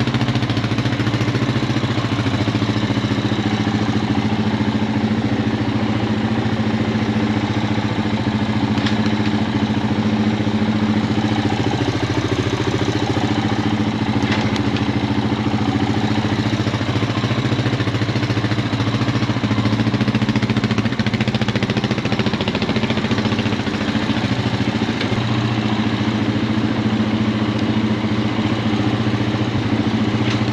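1998 Honda Foreman 450 ES ATV's air-cooled single-cylinder four-stroke engine idling steadily.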